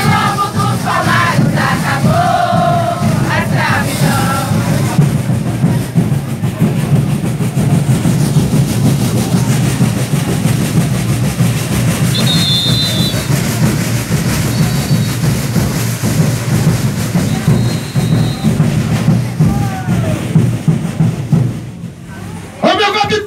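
Congado Moçambique group playing: steady drumming and rattles under a crowd of voices, with singing in the first few seconds. A few short high whistle notes sound past the middle.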